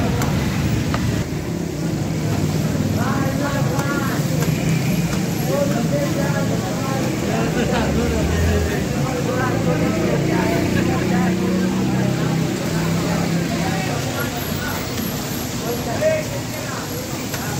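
Chapli kababs deep-frying in a wide karahi of fat, a steady sizzle of bubbling oil, heard under nearby voices and street traffic noise.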